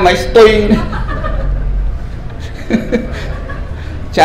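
A man's voice into a microphone: a few words at the start, then soft chuckling.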